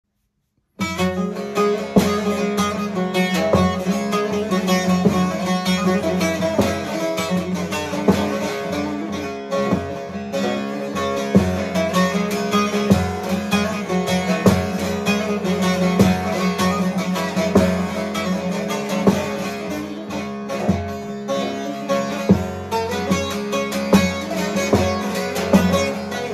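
Solo bağlama (long-necked Turkish saz) playing an instrumental introduction, starting just under a second in: quick plucked notes over a steady low ringing drone.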